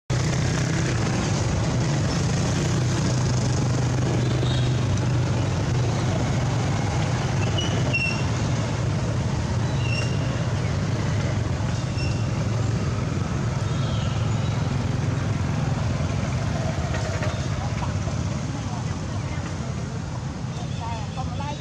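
Steady low hum of road traffic or a running vehicle engine, with voices in the background and a few short high chirps in the middle.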